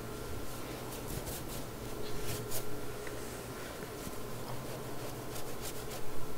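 Large soft watercolour brush stroking water across watercolour paper: a few soft, brief brushing sweeps, wetting the sheet so the colours will spread.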